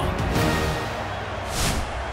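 Theme music for the intro, with a short whoosh transition effect near the end.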